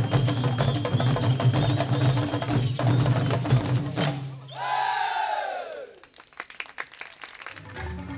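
Live traditional Ugandan drum ensemble playing dense, fast drumming over a steady low tone, which stops about four seconds in. A single long vocal cry follows, rising and then falling in pitch. After it come a few scattered sharp knocks, and crowd noise returns near the end.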